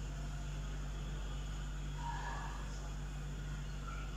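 A steady low hum over faint background noise, with a brief faint sound about two seconds in.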